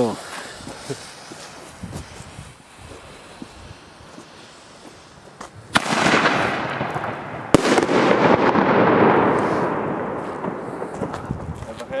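Firework fuse fizzing for about five and a half seconds. Then a Pyroland BKS 1 single-shot mortar tube fires with a sharp crack, its shell rising with a hissing, sparking tail, and bursts with a loud bang about two seconds later. A hiss follows and fades away over the next few seconds.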